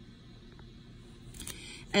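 Quiet room tone with a faint click and a brief rustle of handling noise, then a woman's voice starts reading aloud at the very end.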